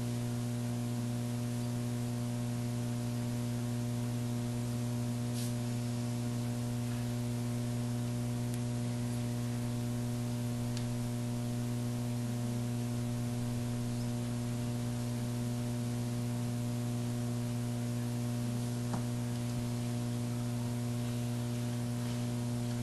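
Steady electrical mains hum on the meeting-room microphone feed, with light hiss and a few faint ticks.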